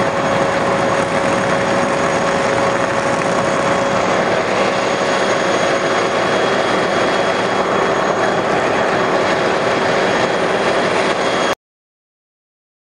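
Fire hose nozzle flowing a steady stream of water, with the fire engine's pump running: a loud, steady rushing noise that cuts off abruptly near the end.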